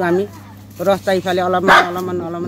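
A woman speaking, with a dog giving a single short bark near the end.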